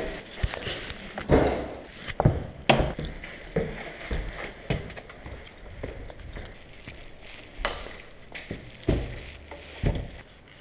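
Irregular knocks, clicks and jingling of a bunch of keys on a neck lanyard as the wearer moves, with the loudest knocks in the first few seconds.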